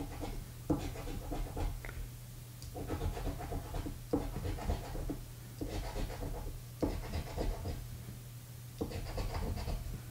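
A coin-like scratcher token rasping the coating off a paper lottery scratch-off ticket in repeated bouts of a second or two, each starting sharply, over a steady low hum.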